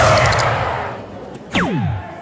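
Electronic soft-tip dartboard sound effects. A bull-hit effect fades away over the first second. About a second and a half in, a new hit sound with a falling whistle-like sweep plays as the third dart scores a single 17.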